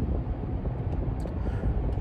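Steady low rumble of a moving car's engine and road noise, heard from inside the cabin.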